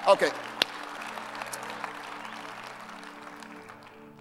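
Audience applause dying away over a soft, steady keyboard chord held underneath.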